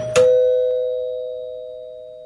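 Two-note doorbell ding-dong chime: a higher note followed at once by a lower one, both ringing on and slowly fading. It is Avon's 'ding-dong' sound logo over the end card.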